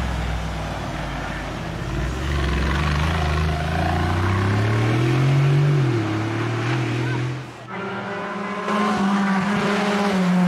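Engine of a lifted Mercedes G-Class off-roader pulling hard past close by and drawing away uphill, its pitch rising and then dropping at a gear change about six seconds in. After a sudden break near the end, the engine of a Simca 1000 Rallye 2 is heard approaching under power, its pitch climbing.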